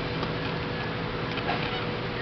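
A few faint ticks of a Phillips screwdriver turning out the screw that holds a window shade's plastic cord-loop clutch, over a steady background hum.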